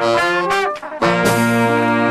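Live jazz band led by a trumpet: a run of short trumpet notes, a brief break a little under a second in, then the band comes in on a long held chord with a cymbal crash about a second in.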